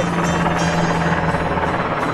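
Helicopter flying overhead: a steady drone of engine and rotor with a constant low hum.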